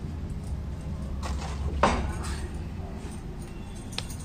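A few clinks and knocks of metal puja vessels, the sharpest just under two seconds in with a short ring, over a steady low rumble.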